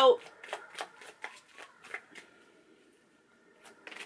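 A deck of tarot cards shuffled by hand: a run of light card flicks, about three or four a second, that stops a little past halfway, with one more flick near the end.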